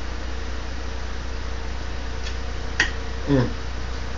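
A steady low hum, with a single sharp click a little under three seconds in and a short "mm" from a man eating near the end.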